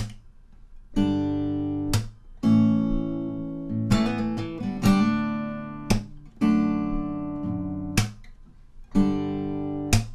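Steel-string acoustic guitar played fingerstyle through a slow D, D/F#, G, A chord progression, with a sharp percussive strum-slap about every two seconds and a quick run of notes near the middle.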